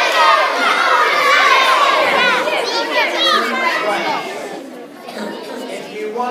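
A hall full of young children calling out and shrieking all at once, loud for about four seconds and then dying away.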